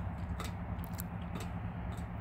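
Steady low engine hum of a vehicle on a nearby road, with four light clicks spaced about half a second apart.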